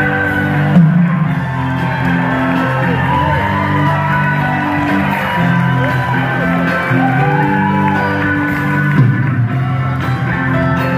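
Live rock band playing the instrumental opening of a song over a concert PA, with sustained bass and chords, while audience members whoop and cheer.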